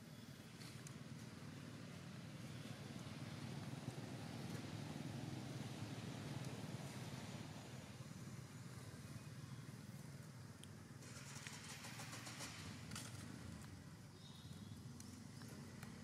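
Low steady rumble of a motor vehicle's engine, growing louder a few seconds in and easing off again. A brief crackling rustle comes about eleven seconds in.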